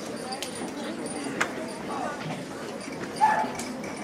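Audience murmuring in a large hall, with sharp, scattered clicks of shoes on the wooden stage and risers as students walk across. A brief voice rises above the murmur about three seconds in, the loudest moment.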